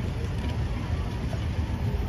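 Street traffic at a busy city intersection: a steady low rumble of cars going by.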